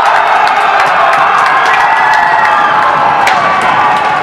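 Ice hockey arena crowd cheering and shouting loudly and without a break, greeting a goal, with a few sharp knocks through it.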